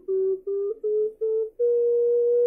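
Ceramic pendant ocarina playing a rising run of short notes in small, half-step-like steps, then holding one long, pure note. The added subhole lets the player reach the in-between chromatic notes.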